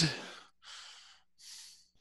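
A person breathing into a close microphone: three short, soft exhalations in a row, like sighs.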